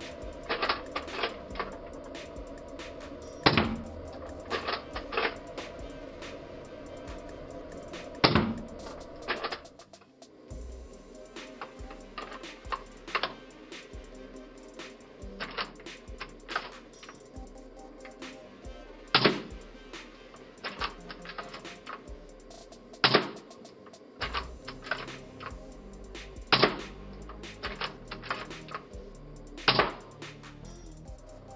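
Background music with a series of sharp snaps and clicks from a C-TAC CT700LE spring-powered airsoft sniper rifle being cocked and fired, a loud snap every few seconds with smaller bolt clicks between.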